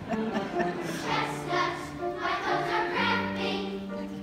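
Large youth choir singing held notes in harmony.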